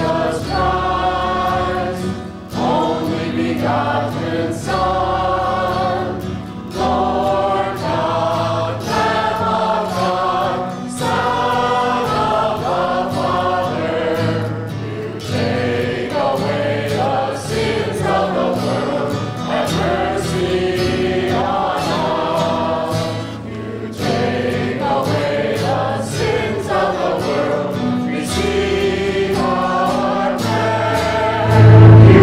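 Church choir singing liturgical music, the voices carried over sustained low accompaniment.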